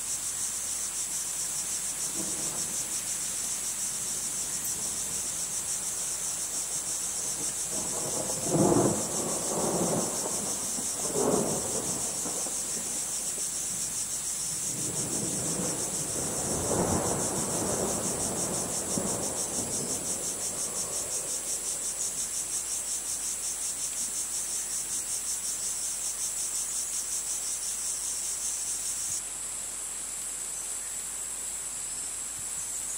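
Crickets chirring in a dense, steady high-pitched chorus with a fine rapid pulse. Low rumbles swell and fade in the middle, two short loud ones about nine and eleven seconds in and a longer, softer one a few seconds later; the cricket chorus thins shortly before the end.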